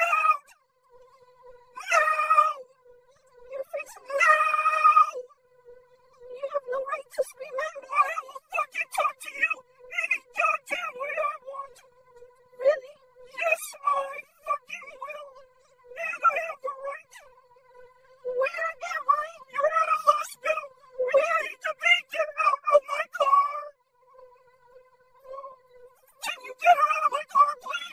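A cartoon character's voice wailing and yowling without words, in repeated bursts of a second or two, over a steady electronic hum that carries on between the cries.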